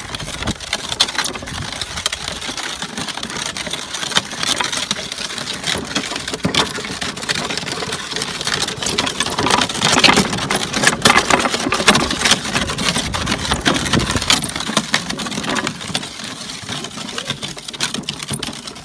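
Small wooden ram-drawn cart rolling along a dirt road, its solid wooden wheels and axle rattling and knocking continuously with a dense run of clicks.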